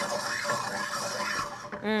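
Oil and butter sizzling gently as they heat in a stainless steel sauté pan, a steady hiss, with a short appreciative "mmm" near the end.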